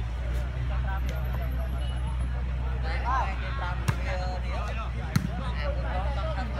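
A volleyball struck twice by players' hands, two sharp slaps about a second apart in the second half, over people calling out and a steady low rumble.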